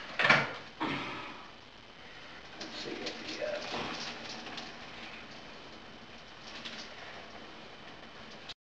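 Two loud metal clanks in the first second as a kettle and stainless stockpot are handled on the stovetop, then hot water poured from the kettle into the stockpot with small clinks and splashes.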